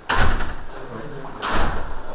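Two heavy thuds about a second and a half apart, from the room's side door being swung and bumped shut.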